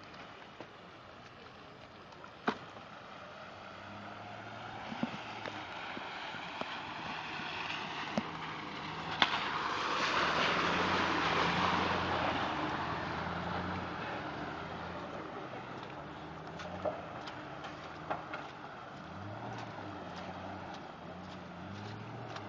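Jeep WJ Grand Cherokee driving slowly through swamp water, engine running under a wash of splashing water from the tyres. It grows louder as it passes close by about ten seconds in, then fades as it pulls away, with a few sharp clicks along the way.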